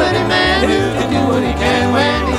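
Bluegrass band playing an instrumental break: banjo and guitar picking over a steady, pulsing bass, with a lead instrument's sliding, bending notes on top.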